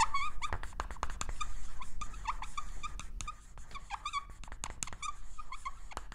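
Marker pen squeaking and tapping on a whiteboard: short squeaky strokes mixed with quick taps, getting quieter a little past halfway.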